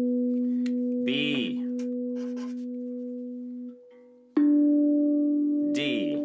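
Steel tongue drum tongues struck with a mallet, one note at a time. A low B rings and slowly fades, is stopped short a little under four seconds in, and a slightly higher D is struck about half a second later and rings on.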